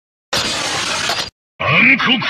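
Transformation-toy sound effects for the Jaken Caliburdriver and Ankokuken Kurayami sword: a harsh crashing noise burst about a second long, cut off sharply. After a short gap, the sword's deep announcer voice begins calling out "Ankokuken Kurayami".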